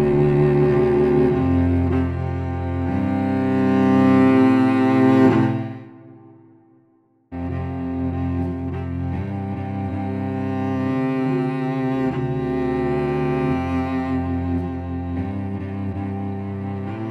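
Sampled solo cello from the Westwood Cello Untamed library, played from a keyboard: a slow bowed melody on the improvised articulation that fades away about six seconds in. About a second later the same melody starts again on the A2 variation, which uses the same samples from a different start point.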